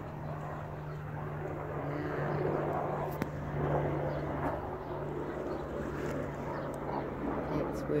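A steady low engine drone.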